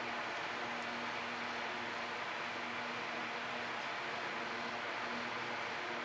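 Steady background hiss with a faint, even low hum and no distinct events.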